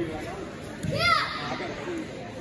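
A child's high-pitched kihap shout, "Yeah!", about a second in, the pitch rising and falling, given with a technique in a taekwondo form. Indoor hall chatter runs underneath.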